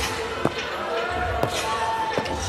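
A basketball being dribbled on an indoor court: two bounces about a second apart, with voices in the background.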